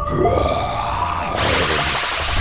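Comic sound effects over background music: a grunt-like voice sound with a sliding pitch, then a loud hissing puff from about one and a half seconds in, the sound of a cartoon smoke cloud appearing.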